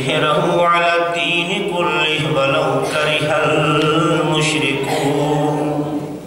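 A man chanting a religious recitation into a microphone in long, melodic, drawn-out phrases, holding the last note steady for several seconds.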